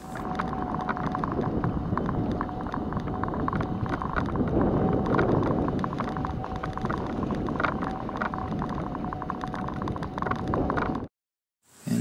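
Orthoquad ES950 electric mobility scooter travelling along a concrete sidewalk: a steady thin whine over a dense rattle and rumble from the wheels and body on the pavement. It cuts off suddenly near the end.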